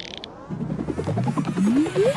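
Sci-fi teleport sound effect: a fast clicking, ratchet-like buzz that starts about half a second in, its pitch climbing in steps from low to high.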